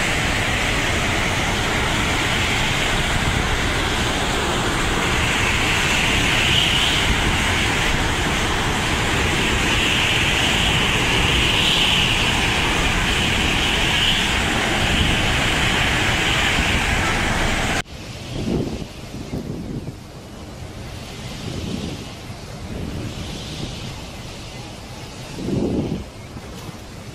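Cyclone-force wind and driving rain, a loud steady rush with wind buffeting the phone's microphone. About eighteen seconds in it cuts off suddenly to a quieter stretch of wind and rain, with a few low gusts swelling up.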